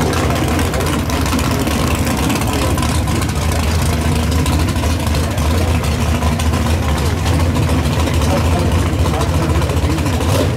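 Pro-mod drag car's V8 engine idling loud and steady, with no revving.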